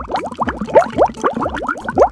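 Bubbling sound effect: a quick, even run of short rising bloops, like bubbles in a bath.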